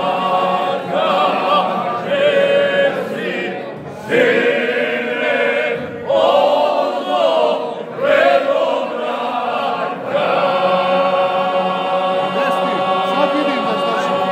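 Men from Lika and Dalmatia singing a folk song together a cappella in several-part harmony. The phrases are broken by short breath pauses, and the last phrase is held long near the end.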